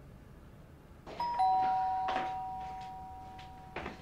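Two-tone doorbell chime: a higher note about a second in, then a lower note a moment later, both ringing on and slowly fading.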